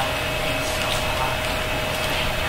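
Steady background hum and hiss of a large room, with one constant mid-pitched tone.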